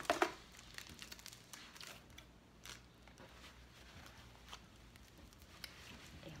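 Plastic snack wrapper crinkling and rustling in the hands, a louder rustle right at the start, then scattered small crackles as the packet is handled and peeled open.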